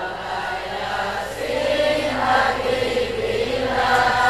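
A crowd of congregants singing an Islamic salawat together over a PA, a loose mass of voices with no single lead voice, in the response between the leader's sung lines.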